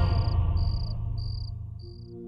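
Crickets chirping: four short, high chirps about half a second apart, over the fading tail of a low musical swell.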